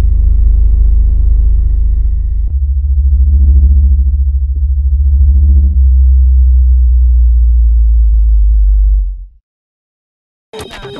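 Loud, deep synthesized bass drone of a video intro sting. It shifts about two and a half seconds in, throbs until near six seconds, settles into a steady hum, then fades out about nine seconds in.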